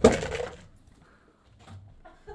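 A short rustling clatter of a hand rummaging in a plastic jack-o'-lantern bucket, loudest at the start and fading within about half a second, then quiet.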